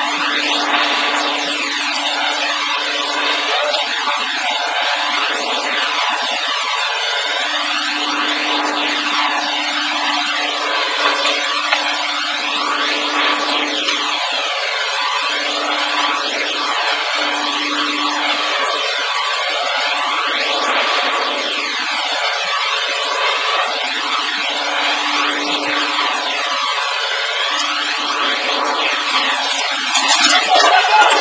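Steady drone of a heavy machine's diesel engine, the tracked excavator working a lift, with a humming tone that drops out for a moment several times. The whole sound has a sweeping, warbling quality and no deep bass.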